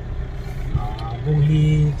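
Low steady rumble of a vehicle driving, heard from inside it, with a person's voice over it in the second half.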